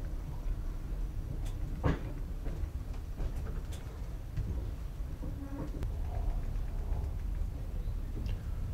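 Steady low rumble of a passenger train running, heard from inside the carriage, with a few sharp knocks and rattles from the carriage, the loudest about two seconds in.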